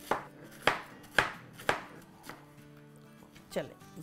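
Chef's knife slicing cabbage on a cutting board: four knife strokes about half a second apart, then a lull and one more stroke near the end.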